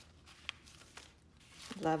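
Paper pages of a handmade junk journal being turned by hand: a faint rustle with a light click about half a second in.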